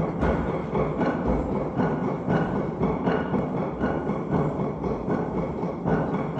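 Children's and youth choir performing a rhythmic greeting number: voices over a steady beat of thumps, about three a second.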